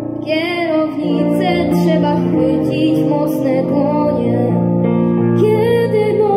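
A small band of violins, viola, cello, clarinet, piano, double bass and drums playing an instrumental passage of a 1950s-style popular song: a wavering melody line over held, stepping lower notes.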